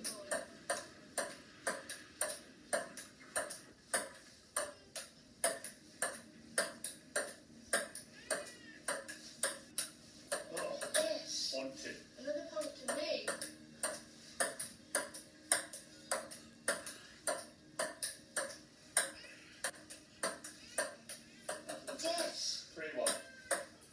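Table tennis rally: a ping-pong ball clicking back and forth between bats and a wooden table top, about two to three hits a second, kept up without a break.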